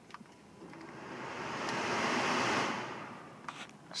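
Climate-control blower fan of a 2014 Honda Ridgeline, a rush of air swelling up over about two seconds after being switched on, then dying away near the end.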